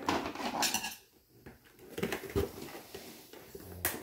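Rigid plastic toy packaging being handled and picked at to open it: a few irregular clicks and knocks of hard plastic, with rustling between them.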